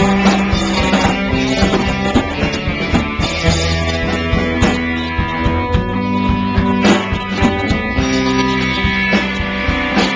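Live rock band playing: electric guitars, bass guitar and drum kit, with a steady beat and sustained guitar notes, picked up by a small camcorder's built-in microphone.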